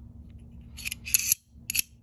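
Reate Exo-M gravity knife's double-edged blade sliding back into its titanium handle and catching, heard as about three short metallic clicks and slides in quick succession around the middle.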